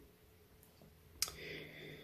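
Near silence broken about a second in by a single sharp mouth click, followed by a faint breath in before speech resumes.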